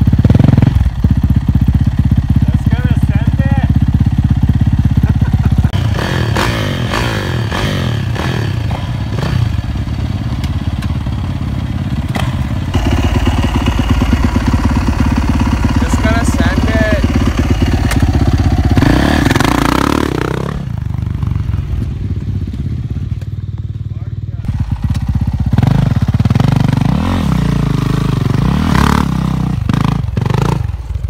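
Dirt bike engine running hard under throttle throughout, with one clear rev that rises and falls about two-thirds of the way through.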